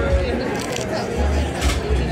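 Restaurant dining-room ambience: indistinct chatter of other diners over a steady low hum, with two brief clicks or clatters.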